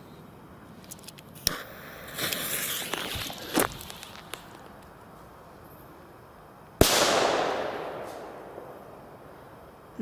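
Panda D-Böller firecracker: a short hiss as the lit fuse burns, then about seven seconds in a single sharp bang whose echo fades away over about two seconds.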